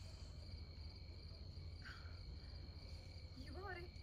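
Crickets trilling steadily, a faint high continuous chirring, over a low steady hum; a faint voice speaks briefly near the end.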